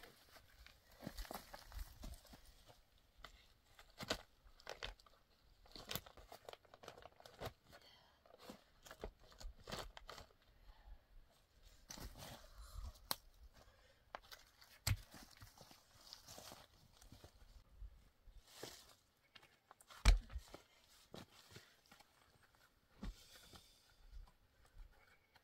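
Footsteps crunching on dry leaves and gravel, with scattered clacks of rocks being picked up and set down on a row of stones. The loudest is a sharp knock about twenty seconds in.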